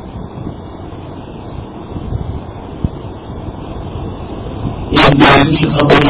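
A pause in a man's talk, filled with a steady low rumble of background noise and one faint click near the middle. The man's voice resumes about five seconds in.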